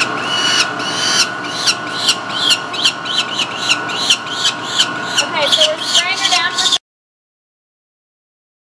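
Peregrine falcon nestling calling over and over while held in the hand, a run of short arched screeching cries about two or three a second, over a steady mechanical hum. The sound cuts off suddenly near the end.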